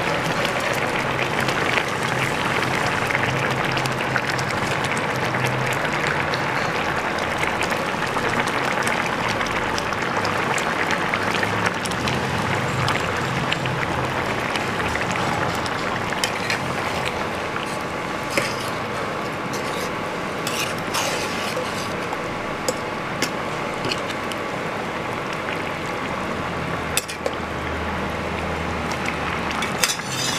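Pan of pulusu gravy with masala vadas and boiled eggs boiling, a steady bubbling hiss, with a few sharp pops or clicks in the second half.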